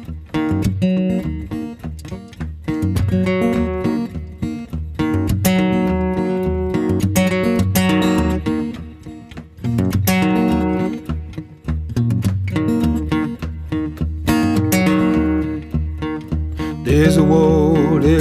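Acoustic guitar strummed in a steady rhythm, playing a song's instrumental introduction. A man's singing voice comes in near the end.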